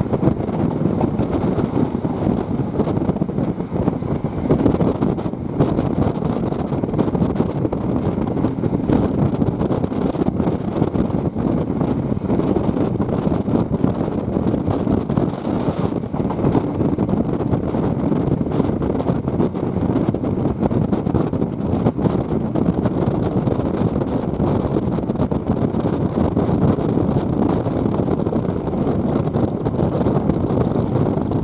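Steady rushing wind buffeting the microphone held out of the window of a moving HST passenger train, over the train's running rumble on the track.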